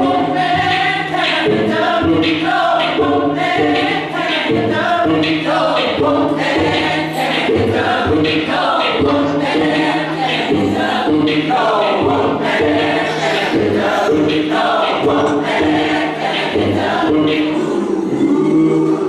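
Youth choir of mixed men's and women's voices singing a gospel song.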